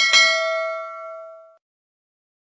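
Notification-bell 'ding' sound effect: a click, then one bell tone that rings out and fades over about a second and a half.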